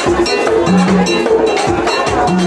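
Ceremonial Vodou percussion: fast drum strokes with a metal bell clanking in time, in a loud, steady rhythm. A low held note comes back about every second and a half.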